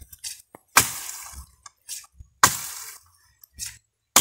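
Axe chopping into a dry fallen tree trunk: two sharp strikes about a second and a half apart, each dying away quickly, with a few light cracks between.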